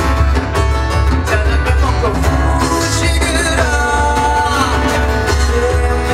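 Live acoustic pop band playing: strummed acoustic guitars, keyboard and percussion with a lead vocal singing the melody.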